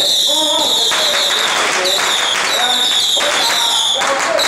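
A ground fountain firework spraying sparks with a loud, high whistle that starts suddenly and keeps going in long stretches with short breaks, each stretch sliding slightly down in pitch. Firecracker crackle runs underneath.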